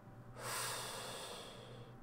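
A long breath out, starting about half a second in and fading away over about a second and a half.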